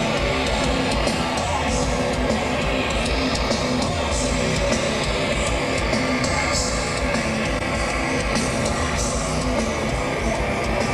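Heavy metal band playing live with no vocals: distorted electric guitars over drums, a loud, dense and steady wall of sound.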